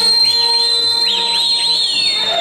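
A long, shrill, high whistle that slides up at the start and is held for about two seconds before dipping slightly near the end, over lively folk dance music with quick swooping high notes.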